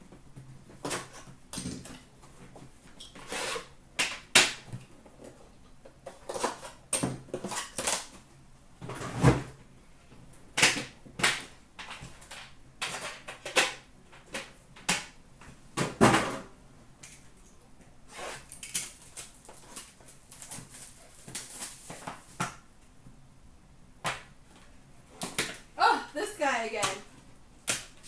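A cardboard case box being cut open and a metal Upper Deck The Cup card tin being handled and set down: a string of irregular knocks, taps and rustles, the loudest knocks about 9 and 16 seconds in.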